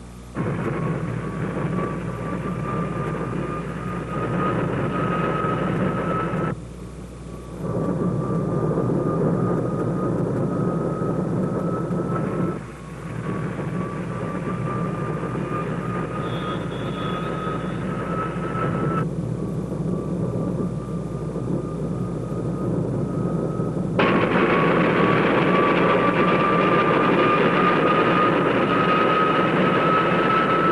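Jet-powered racing hydroplane's turbojet engine running at speed: a loud, noisy rush with a high whine that slowly rises in pitch. The sound is broken by cuts four times and is loudest in the last stretch.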